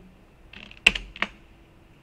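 Computer keyboard keys clicking: a sharp keystroke just before a second in, then a second, lighter one shortly after. These are the key presses that execute the SQL statement.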